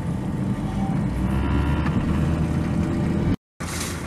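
Pickup truck engine and road noise heard from inside the cab while driving slowly, a steady low hum. It cuts off abruptly just before the end, giving way to outdoor noise.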